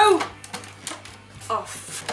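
Several sharp plastic clicks and knocks from an old food processor as its clear bowl and lid are handled and its base controls are worked, with the motor not running.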